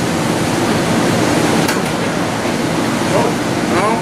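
Loud steady room noise, a dense hiss like a running fan or air handler, with indistinct voices in the background.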